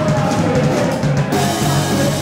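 Live rock band playing loud, with the drum kit to the fore. The top end thins out for the first second or so, then the full band comes back in.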